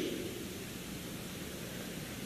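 Steady hiss of a recording's background noise, with no speech and no distinct sound events.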